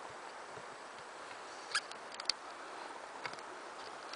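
Quiet woodland background: a steady faint hiss with a few small sharp clicks, two close together about halfway through and one more near the three-second mark.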